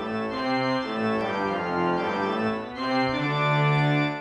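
Sampled church organ (VSCO 2 Community Edition 'Organ' patch) playing a series of sustained chords that change every second or so, ending on a held low chord; a full, churchy sound.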